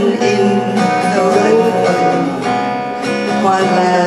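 Acoustic guitar strummed and picked through an instrumental passage of a live song, with no singing over it.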